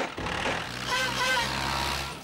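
Small tractor engine running steadily as the tractor pulls away with a loaded trailer, dying away at the end.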